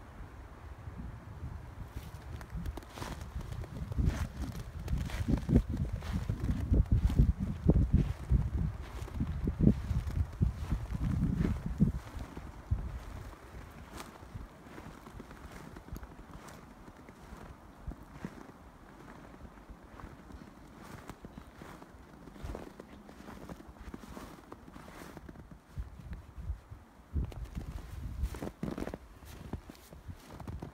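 Footsteps crunching through several inches of fresh, untrodden snow, a steady walking rhythm of soft crunches. A low rumbling noise swells over the steps for several seconds in the first half.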